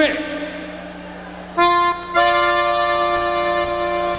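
Piano accordion playing a held chord as a song's introduction. It comes in about a second and a half in, breaks off briefly, then sustains.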